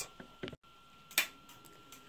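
Indicator flasher relay on a Honda CB750 clicking faintly a few times, the sharpest click about a second in, while all four indicators flash together instead of one side: a wiring fault in the indicator circuit.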